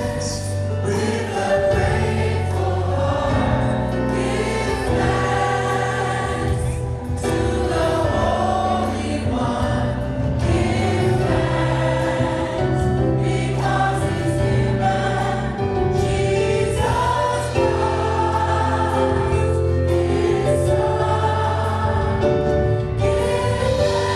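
A church praise team singing a gospel song, several voices together, over a steady low bass line.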